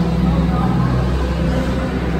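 A steady low rumble with people's voices talking over it.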